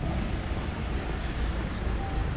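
Steady outdoor street noise with a low rumble: wind on the microphone over city car traffic.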